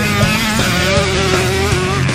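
Dirt bike engine revving hard as the rider passes on a motocross track, heard over loud rock music.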